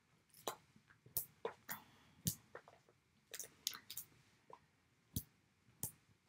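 Cardstock and paper pieces being handled and set down on a tabletop: a series of faint, short taps and rustles, about ten of them, irregularly spaced.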